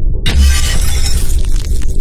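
Glass-shattering sound effect: a sudden crash of breaking glass with a deep low boom about a quarter second in, then scattered clinking shards, over a low musical drone.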